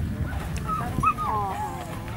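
Small terrier yipping and whining during an agility run: a few short, high calls that slide down in pitch, about a second in.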